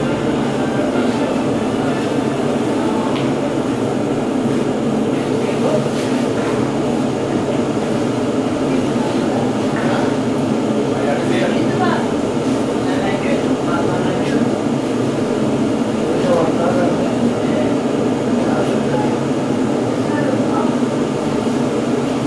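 Loud, steady roar from a bakery's brick bread oven, with its flame burner and extractor hood running, and indistinct voices underneath.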